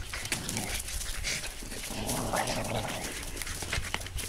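Two Boston terriers growling and scuffling as they tug at a chewed-up rubber football between their jaws.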